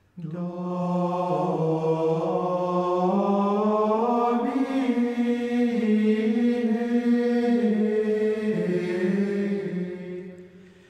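Unison plainchant: voices singing a slow, stepwise melody of long held notes that starts just after the beginning and fades away near the end.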